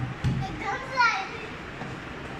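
A young girl's high-pitched voice calls out briefly about a second in, falling in pitch, as she comes down a plastic tube slide. Two low thumps come near the start.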